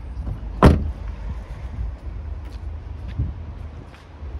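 Rear passenger door of a Vauxhall Corsa shut with one sharp slam just over half a second in, then a softer thump about three seconds in, over a steady low rumble.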